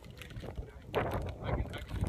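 Wind buffeting the phone's microphone, a rough rumbling noise that picks up about a second in and grows louder.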